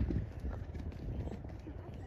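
Hoofbeats of a horse cantering, over a low steady rumble of wind on the microphone.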